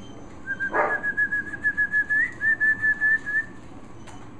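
A person whistling a long run of short, quick notes on one steady pitch, about five or six a second, with a brief upward flick about halfway. It is a whistle to call a dog over.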